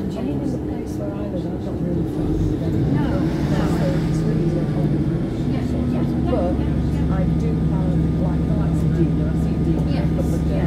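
Inside a Class 150 Sprinter diesel multiple unit on the move: the underfloor diesel engine drones steadily and grows louder about three seconds in, with passengers talking in the background.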